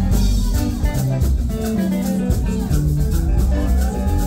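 Live Congolese band music: electric guitars and bass over a drum kit, with a shaker or hi-hat ticking out a steady beat.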